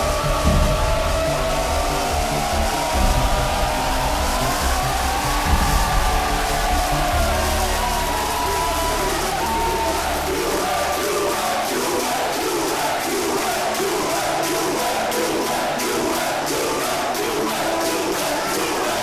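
A crowd of football fans chanting and shouting together over music; in the second half the chant settles into a steady repeated rhythm.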